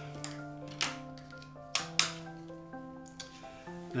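Background music with long held notes, over which come about four sharp plastic clicks, the loudest around two seconds in, as batteries are pressed into the battery compartment of a handheld scanning reading pen.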